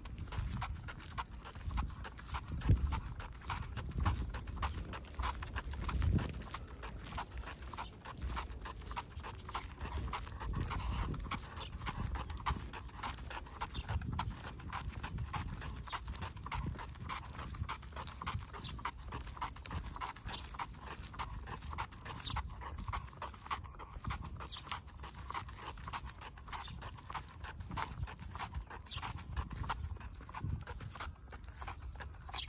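A Cavalier King Charles spaniel's booted paws tapping quickly on asphalt as it walks, over low thumps and rumble from the walker's steps and the handheld phone.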